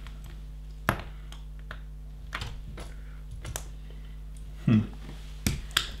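LEGO bricks clicking as pieces are pressed onto the model and handled, a scattering of short sharp clicks, the clearest about a second in and near the end, over a low steady hum.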